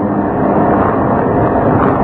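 A man's voice preaching into a microphone in a drawn-out, chant-like delivery, rough and dense, with a steady low hum underneath.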